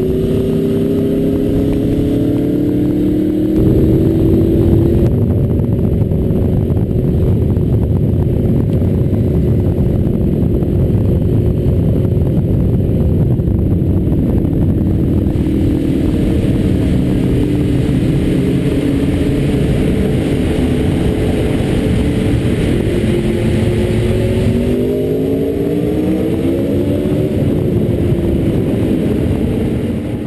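Motorcycle engine heard from on board while riding, its pitch falling and then shifting about three seconds in. It runs fairly steadily, then rises in pitch as it accelerates near the end.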